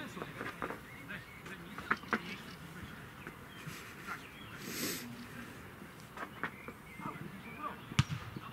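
Sounds of a football match in progress: scattered distant shouts from players on the pitch, with a few short sharp knocks about two seconds in.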